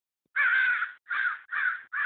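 Crows cawing in alarm over a crow that a dog has killed: three caws, the first the longest, the next two shorter and close together.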